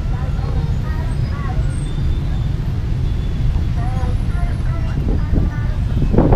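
Busy city street ambience: a steady low rumble of motorbike and car traffic, with scattered voices of passers-by in the background.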